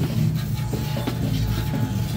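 Arcade game-room noise: a steady low hum from the game machines, with scattered small clicks and knocks.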